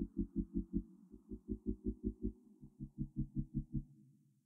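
Muffled background music: a deep pulsing beat in quick runs of four or five notes with short gaps between, fading out near the end.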